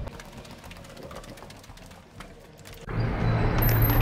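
Faint footsteps and small clicks along a quiet hallway. About three seconds in, a door opens to the outdoors and a louder, steady outdoor noise with a low hum comes in.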